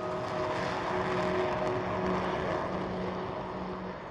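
Jet noise heard inside a Dassault Mirage IV's cockpit in flight, from its twin Atar 9K turbojets: a steady rushing with a low hum, easing a little toward the end.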